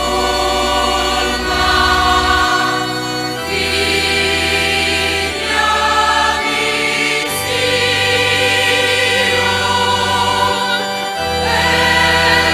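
Choir singing a sacred hymn over instrumental accompaniment, with low bass notes held and changing every second or two.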